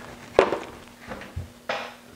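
Handling sounds from a paper booklet of silver-leaf transfer sheets being picked up off a workbench: a sharp tap about half a second in, then a soft knock and a brief paper rustle near the end.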